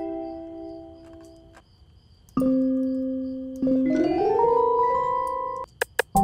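Software keyboard instrument playing on its own: a held chord fading out, a brief gap, then a held low note joined by notes that glide upward in pitch and hold before cutting off. The trap beat's drums come back in at the very end.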